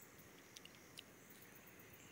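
Near silence: faint outdoor background hiss with a few very faint ticks in the first half.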